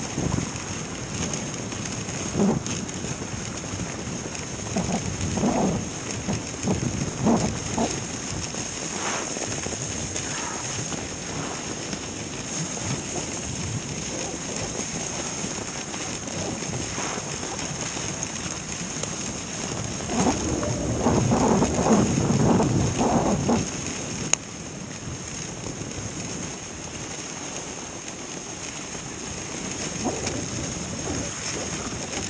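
A dog sled running along a snow trail: the steady hiss of its runners over the snow with irregular bumps and rattles, loudest for a few seconds about two-thirds of the way through.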